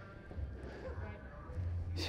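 Faint, indistinct voices over a low, steady hum.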